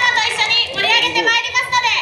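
High-pitched voices calling with gliding, sliding pitch, loud and continuous.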